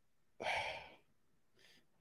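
A man's short breathy sigh that fades out over about half a second.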